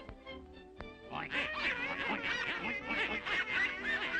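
Old cartoon soundtrack: after a short lull and a click, a dense cluster of high, warbling squawks starts about a second in over the music and keeps going.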